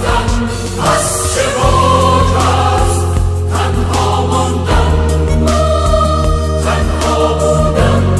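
Choir singing slow sustained lines over low held bass notes, which change about a second in and again near five seconds.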